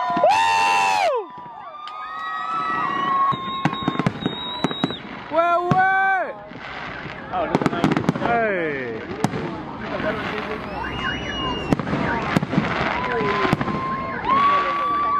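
Fireworks going off overhead, with many sharp bangs and crackles that come thickest in the second half, mixed with people shouting and loud pitched whistle- or horn-like tones, the loudest in the first second.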